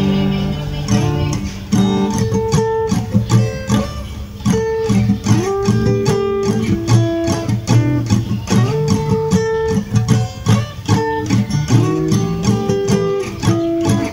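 Acoustic guitar with a capo, played as a continuous run of individually picked notes and chord tones that each ring on briefly.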